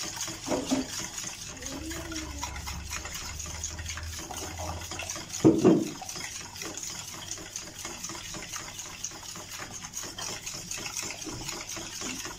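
Two raw eggs being beaten with a fork in a bowl: rapid, steady clicking of the fork against the bowl with the egg sloshing. There is a single louder knock about five and a half seconds in.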